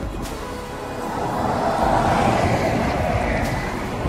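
Background music, with the road noise of a passing vehicle that swells up about a second in and fades away near the end.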